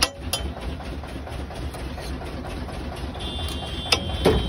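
Metal spatula striking and scraping a large flat iron tawa as bhaji is spread: two quick clacks at the start and another just before the end, over a steady low rumble.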